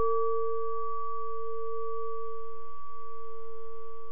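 A singing bowl ringing on after a single strike: a steady low tone with a fainter, higher overtone above it, slowly fading.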